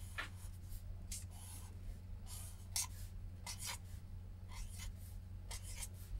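Black marker pen drawing on paper: a run of short, scratchy strokes with brief gaps between them, over a faint steady low hum.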